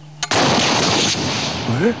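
RPG-7 rocket launcher firing: a sudden loud blast about a third of a second in, its noise trailing off over about a second and a half.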